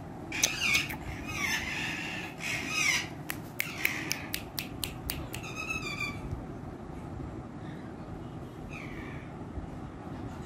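Indian ringneck parakeet squawking in a few short, harsh calls over the first three seconds, then a run of sharp clicks and another brief call near the end.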